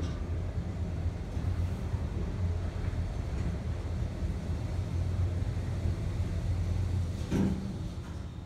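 Otis traction elevator car travelling down: a steady low rumble from the moving cab, with a brief knock near the end.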